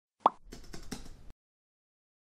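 Intro animation sound effects: a single sharp pop, then a quick run of keyboard-typing clicks lasting about a second as text fills a search box.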